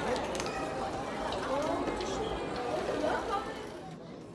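Indistinct chatter of many voices, with a couple of short clicks about half a second in.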